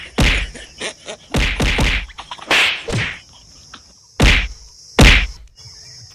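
Blows in a staged fistfight: a series of loud, sharp whacks, about eight in six seconds and unevenly spaced, with a pause in the middle.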